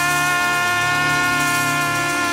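A keyboard holding one sustained chord, the notes steady and unchanging in pitch.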